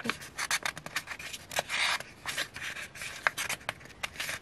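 Fingers rubbing and lifting the paper sheets of a small notepad glued into a handmade journal: a quick, uneven run of short rustles and dry ticks of paper.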